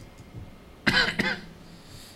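A person coughing once, loud and sudden, about a second in.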